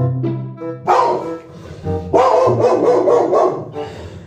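A dog barking over background music: one loud bark about a second in, then a longer run of barking from about two seconds in.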